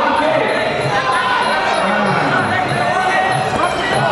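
Live Muay Thai fight crowd in a large hall: many voices shouting and calling at once, with dull thuds mixed in.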